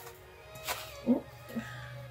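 Soft background music with sustained held notes, with a short sharp rustle and two brief voice-like sounds about a second in.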